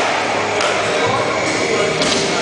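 Steady din of a busy indoor skatepark: background voices and music echoing in the hall, with a few light taps and knocks from skates on the plywood floor.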